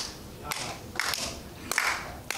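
A few irregular hand claps from one person, about six short claps spread across two seconds.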